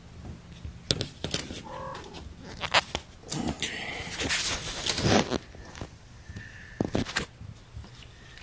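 Cat fur brushing and rubbing against the phone's microphone as the mother cat presses close: sharp crackles and a longer, louder rustle in the middle. A few short kitten mews are heard over it.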